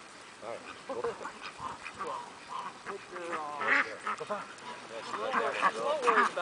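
A flock of domestic ducks quacking in short, scattered calls while a herding dog moves them.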